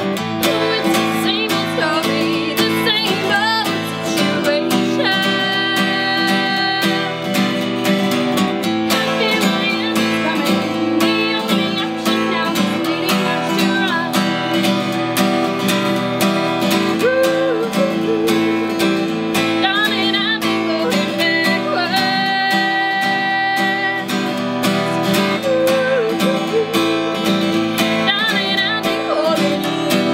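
A woman singing an upbeat song to her own steadily strummed acoustic guitar.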